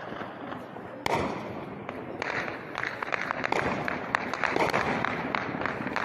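Celebratory gunfire shot into the air: a sharp shot about a second in, then from about two seconds in a dense, uneven run of many shots in quick succession.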